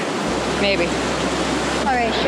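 Steady rush of river water running over rocks in shallow rapids, with a low rumble coming in just after the start.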